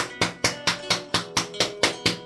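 A steady, sharp percussive beat, about four strikes a second, with no melody over it.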